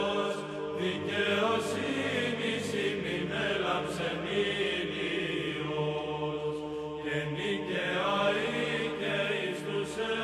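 Closing music of slow chanted singing, voices holding long notes that bend in pitch now and then.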